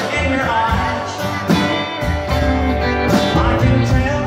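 Live country band playing: electric guitar, acoustic guitar, upright bass and drums, with notes that bend upward in a lead line over the rhythm.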